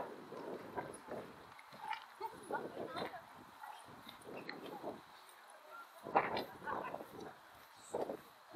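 Footsteps and passers-by talking on a pier walkway, with a dog giving a short bark about six seconds in.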